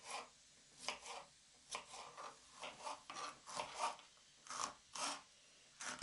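Kitchen knife slicing zucchini into thin strips on a wooden cutting board: faint, short cutting strokes, about two a second.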